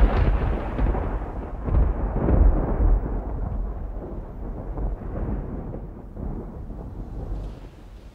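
Rolling thunder: a long low rumble that swells again about two seconds in and slowly dies away.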